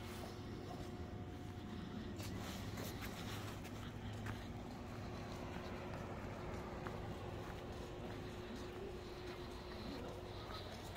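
Footsteps on a paved walkway, faint and irregular, over a steady low background rumble.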